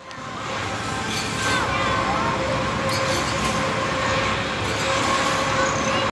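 Spinning amusement-park flat ride running: a steady mechanical hum with a constant tone, under a background of people's voices and a few short clinks.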